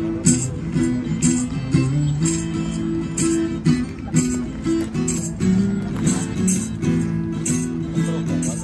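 Acoustic guitar of a performer of Spanish folk songs, played as strummed chords with plucked melody notes in a steady rhythm.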